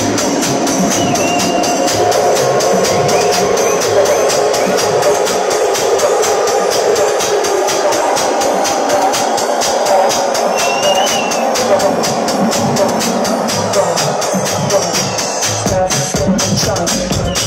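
Techno/house track playing loud on a club sound system. About two seconds in, the kick and bass drop out, leaving fast hi-hats and a mid-range synth line in a breakdown. The low end comes back near the end.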